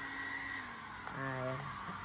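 Electric hair dryer running with a steady whine and a lower hum over a blowing hiss; the whine drops in pitch and fades about half a second in, leaving the softer hiss.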